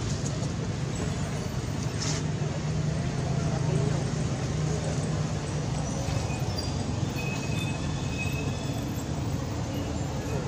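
Steady low outdoor rumble like distant traffic, swelling a little around four seconds in, with a few faint short high chirps in the second half.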